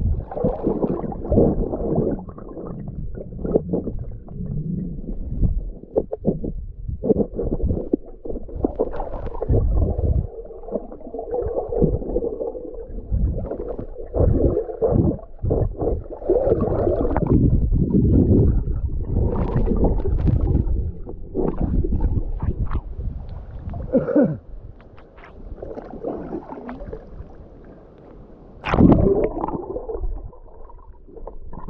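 Muffled gurgling and rumbling of water moving around a submerged camera, rising and falling unevenly, with scattered knocks and one louder knock near the end.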